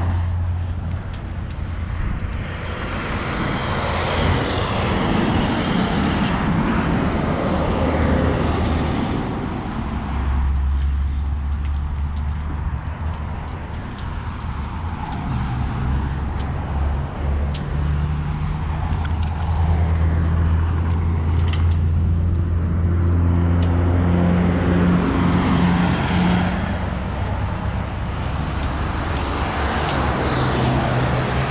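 Vehicle engines idling with a steady low hum, and highway traffic passing by, swelling a few seconds in and again near the end.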